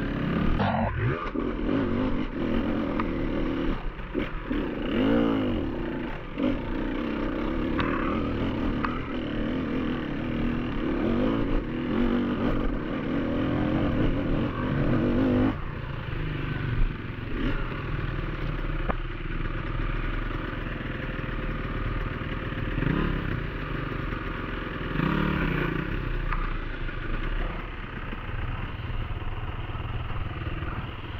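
Beta enduro motorcycle engine pulling hard on a rocky, muddy climb, its revs rising and falling repeatedly as the throttle is worked, with occasional knocks and clatter from the bike over the rough ground.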